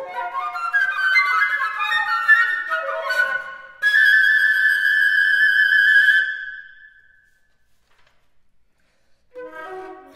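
Two flutes playing: quick interwoven runs of notes, then one loud held high note with vibrato from about four seconds in that fades out near seven seconds. After a pause of near silence the flutes come back in with quick, lower figures near the end.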